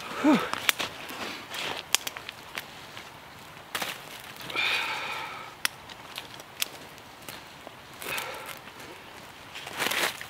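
Irregular sharp snaps and crackles of dry twigs being broken and burning in a small kindling fire, with dry leaves rustling as a person shifts over it. A short grunt comes right at the start.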